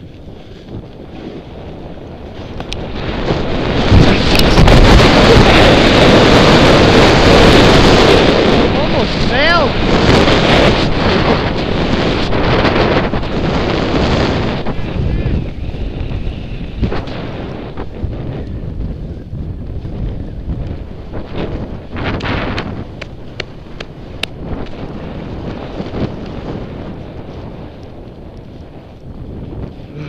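Wind rushing over the microphone of a body-worn camera during a fast descent on a snow slope. It swells to its loudest a few seconds in, stays loud for about ten seconds, then eases to a lower steady rush with a few short scrapes and knocks.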